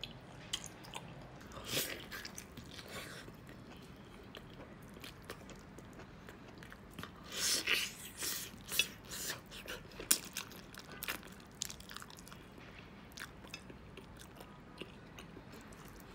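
A person biting and chewing meat and skin off a braised crocodile leg held in the hands, close to the microphone. Scattered short mouth and bite noises, with a louder run of chewing around the middle and a sharp click just after.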